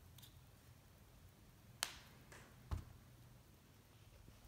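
Binoculars being handled: three short sharp clicks in the second half, the last with a light knock, over a faint low room hum.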